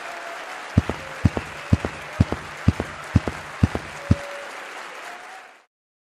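Audience applause, with a steady low thump about twice a second through the middle. The applause fades out and cuts to silence near the end.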